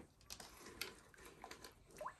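Near silence with a few faint, light ticks as bare fingers brush leeches off the wall of a plastic tub of water.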